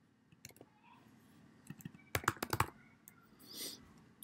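Typing on a computer keyboard: a few scattered key clicks, then a quick run of keystrokes about two seconds in, followed by a short soft hiss near the end.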